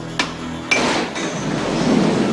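A sharp metal clank, then a louder metal impact, followed by a swelling rush of water gushing out in a spray.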